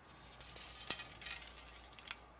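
Faint rustling and light clicks of a winding check being handled and tried on a fishing rod blank, with one sharper click about a second in. Under it, a low steady hum.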